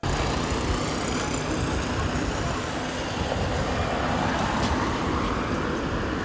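Steady road noise of a vehicle moving over a rough, broken road, with a heavy low rumble.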